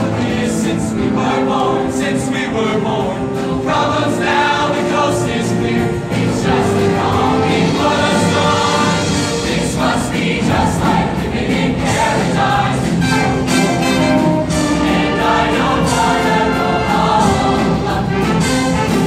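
A high school show choir singing together over its live band, with a steady beat.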